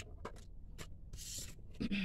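Tarot cards being handled: a few light clicks as a card is pulled from the deck, then a short sliding rustle about a second in as it is drawn and laid down. Near the end comes a brief low vocal sound, a hum or breath.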